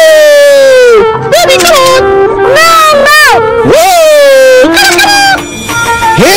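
A voice singing long wordless notes that bend up and down in pitch, about five notes with short breaks between them, loud and strongly pitched.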